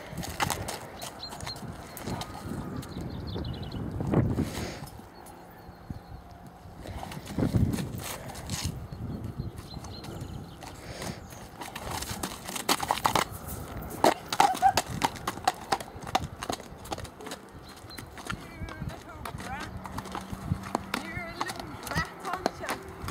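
A ridden horse's hooves clip-clopping irregularly on a dirt farm track, with voices at times.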